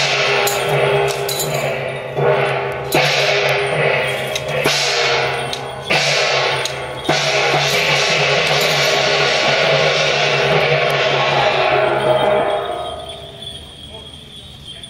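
Traditional Taiwanese temple-procession percussion: drum beats and crashing cymbals over a sustained low tone. It hits with several sharp accents in the first seven seconds, then holds a dense crash, and dies away near the end.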